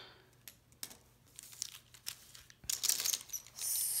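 Plastic pen packaging crinkling with faint light clicks as pens and their packs are handled. The crinkling grows louder for about a second near the end.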